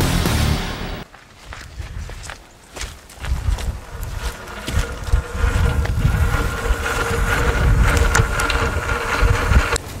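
A brief loud intro sting at the start. Then, from about halfway, the electric winch, a Warn Axon 45-RC, runs with a steady whine and a low rumble, reeling in its synthetic rope.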